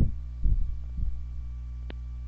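Steady low hum, with two dull low thumps in the first second and a single short click near the end.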